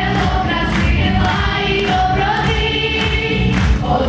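A children's choir and girl soloists singing into microphones over instrumental accompaniment with a steady beat.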